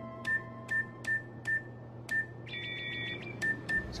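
Electronic safe keypad beeping as a code is keyed in: a short click and beep with each key press, five in a row. About two and a half seconds in comes a brief warbling multi-tone signal, then two more key beeps.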